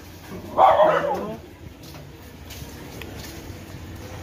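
A dog gives one short bark about half a second in, followed by low background noise.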